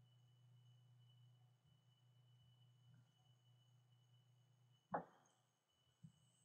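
Near silence with a faint steady hum from the recording chain. A single sharp click comes about five seconds in: a computer keyboard keystroke.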